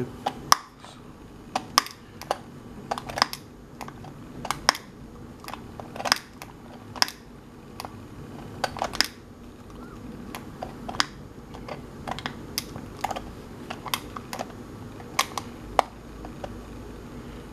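Push-button switch of a battery-powered LED puck wall light clicking under a fingertip: about thirty sharp clicks at uneven intervals, some in quick pairs. The switch is being pressed over and over because it is not catching easily.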